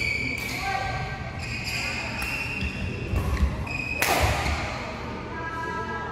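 Badminton shoes squeaking sharply and repeatedly on the court floor during a rally, with footfalls thudding. A single sharp racket hit on the shuttlecock about four seconds in is the loudest sound.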